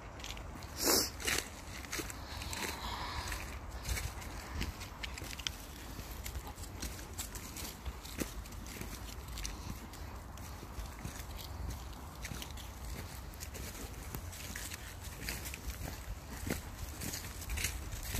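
A person and a dog walking on a frosty dirt track: faint irregular footsteps over a steady low rumble on the microphone, with a louder thump about a second in.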